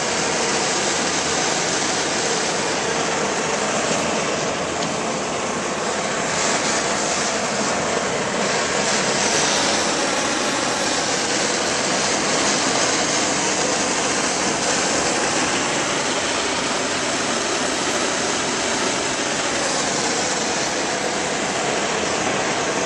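Multi-jet low-pressure gas burner, 175,000 BTU, running at 0.5 psi with its ball valve fully open: a steady, even rushing noise of the gas jets burning.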